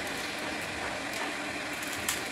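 A block of dry instant noodles crunching and crackling as it is squeezed and broken up by hand.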